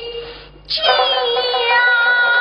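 A woman singing in Suzhou tanci (pingtan) style: a held note fades out near the start, and about two-thirds of a second in she starts a new long, steady note that she holds on.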